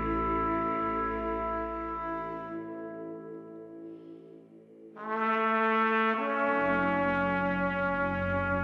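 Trumpet playing long held notes in a slow instrumental introduction. The sound fades almost away about four seconds in, a new held note enters at five seconds, and lower sustained notes join about a second after that.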